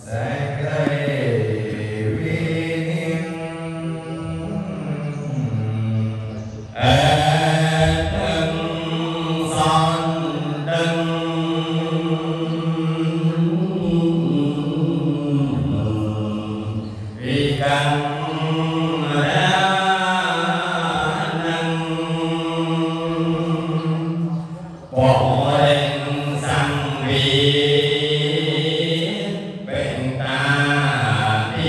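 Khmer Buddhist chanting by a male voice into a microphone: long, slowly gliding melodic phrases, each several seconds long, with short breath pauses between them.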